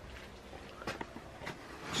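Quiet background with a few faint, scattered clicks and knocks.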